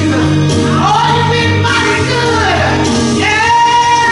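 Live gospel praise singing led by a woman's voice over instrumental accompaniment with sustained low bass notes.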